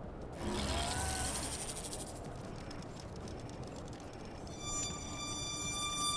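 Cinematic trailer sound design: a steady low wind-like rumble with a swell and a few short rising whistling calls about half a second in, then a sustained high musical drone of several held tones building near the end.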